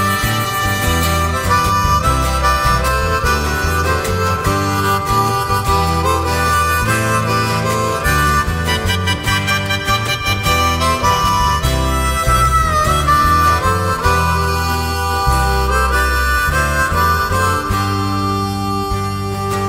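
Harmonica solo over a steady guitar and bass backing: an instrumental break between the sung verses of a folk-style song.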